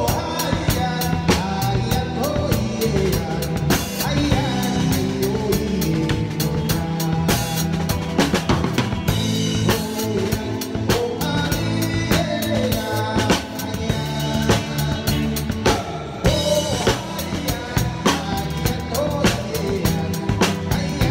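Live band music heard close beside the drum kit: the drums, with bass drum and snare, play a steady beat loudest of all, over an electric bass line and other band instruments.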